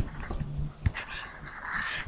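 Stylus on a drawing tablet: a few sharp taps and a soft scratching as handwriting goes onto the slide, with a brief low hum early on.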